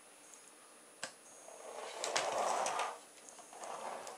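A sharp click about a second in as the release mechanism lets go, then a rubber-band-powered car on CD wheels rolling across a wooden floor for about a second and a half.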